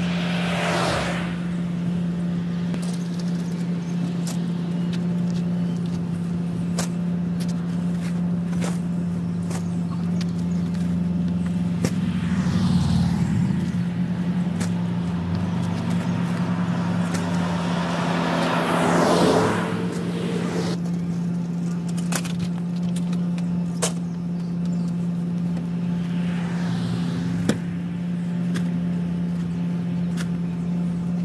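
A parked truck's engine idling with a steady low hum, while cars pass on the street about four times, the loudest about two-thirds of the way through. Scattered light knocks and clicks are heard over it.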